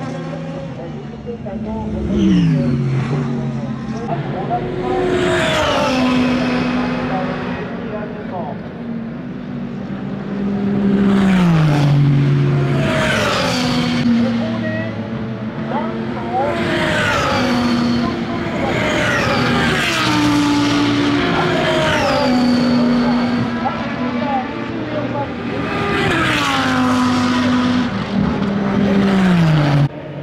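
SUPER GT race cars passing one after another at racing speed, engines at high revs. Each engine note holds a pitch and then slides sharply down as the car goes by, about every two to three seconds.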